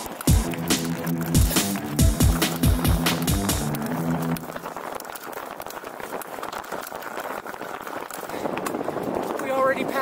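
Electronic dance music with a heavy kick drum and bass line, cutting off about four seconds in. After it, the steady rushing noise of a mountain bike ridden fast on hard-packed dirt singletrack: wind on the microphone and tyre noise.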